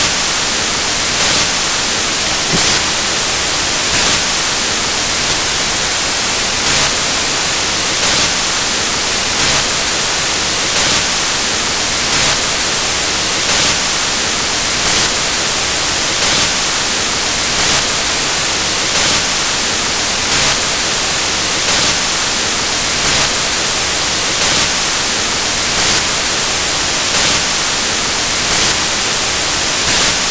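Loud, steady hiss of static noise covering the sound track, with a faint pulse repeating at an even pace, a little more than once a second; no voice comes through.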